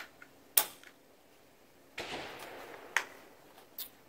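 An AR-15 rifle being put back together by hand with a .22 LR conversion kit fitted: several sharp metallic clicks, and a brief scraping slide about halfway through that fades over a second.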